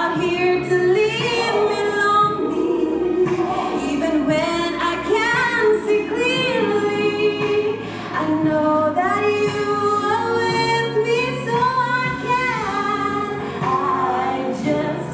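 A woman singing a slow worship song solo into a handheld microphone, holding long notes and gliding between pitches.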